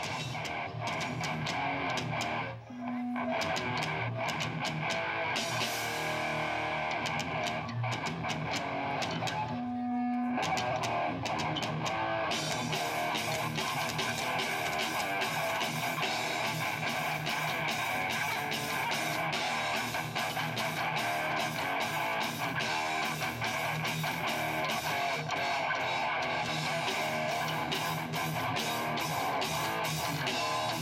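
Live rock band playing on an outdoor stage: electric guitar over drums. The playing breaks off briefly twice in the first ten seconds, then runs on fuller and denser from about twelve seconds in.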